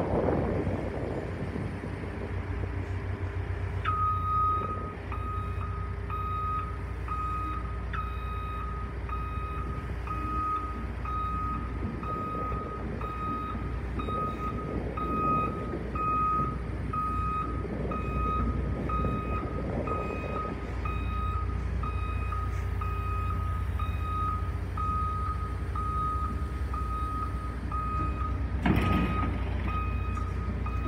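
Caterpillar excavator's diesel engine running as the machine tracks down off a lowboy trailer. Its travel alarm starts about four seconds in and beeps steadily, roughly one and a half beeps a second. A single loud knock comes near the end.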